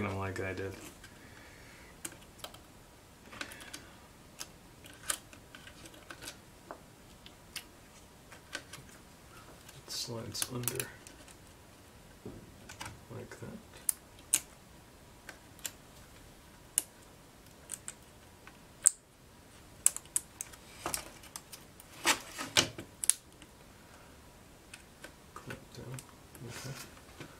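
Small plastic clicks and taps of laptop parts being handled and pressed into place in the chassis, at irregular intervals. They come in busier clusters about ten seconds in and again a little past twenty seconds.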